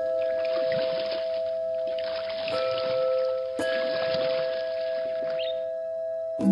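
Ambient meditation music: long held tones sustained steadily, layered over a flowing-water sound.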